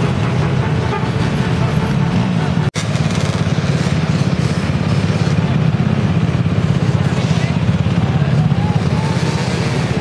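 Many dirt bike and ATV engines running together, a steady rapid engine drone with some revving, with crowd voices mixed in. The sound breaks off for an instant near three seconds in.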